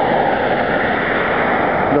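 Steady rushing noise of wind and road, with no distinct pitched engine note.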